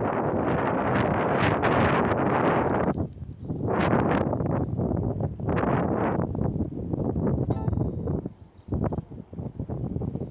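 Wind buffeting a phone's microphone in gusts, loud and rough, easing briefly about three seconds in and again near the end, with a short crackle shortly before the end.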